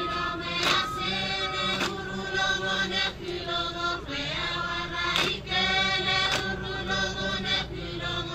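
A Chuukese group of men and women chanting in unison in long held phrases, punctuated by sharp group hand claps roughly once every second.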